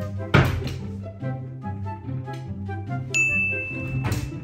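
Light instrumental background music with steady notes, cut by a sharp hit about a third of a second in. Near the end a high, clear ding starts and holds.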